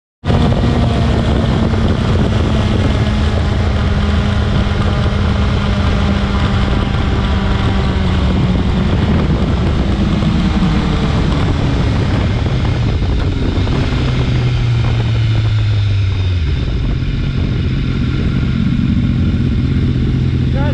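BMW S1000RR's inline-four engine running at part throttle under heavy wind rush, its note falling in steps as the bike slows, settling into a steady idle in the last few seconds.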